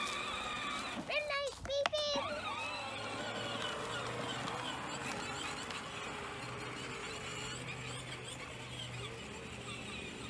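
Peg Perego 12-volt electric ride-on toy tractor driving across grass, its motors giving a low steady hum. A child's high voice calls out briefly about a second in.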